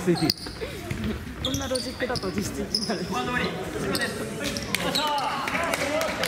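A basketball bouncing on a wooden gym floor, over the voices and chatter of players on the court.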